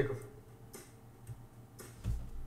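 A few faint, separate clicks over a low steady hum.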